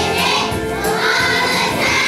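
A children's choir singing a song together.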